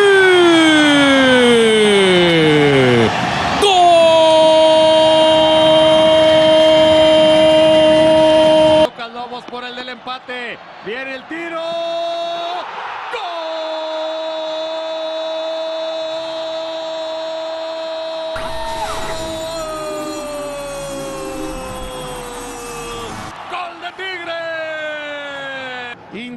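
Spanish-language TV commentator's drawn-out goal cry, a long held "gooool" with a crowd behind it, given twice. The first cry falls in pitch and then holds one loud note until it cuts off about nine seconds in. The second runs for about ten seconds and slowly sinks in pitch near its end.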